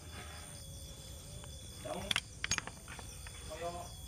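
Quiet work noise: a few light, sharp metal clicks of hand tools on the clutch master cylinder mounting about two seconds in, over a faint steady high-pitched tone and faint distant voices.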